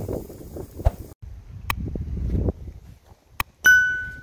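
Wind rumbling on the microphone outdoors, then near the end a click and a bright bell chime that fades quickly: the sound effect of a subscribe-button animation.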